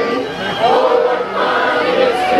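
A choir singing in several voices: a held note ends just after the start, and a new phrase begins about half a second in.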